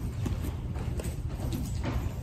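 Footsteps and shuffling of people walking in a line through a church, as scattered soft knocks over a steady low rumble.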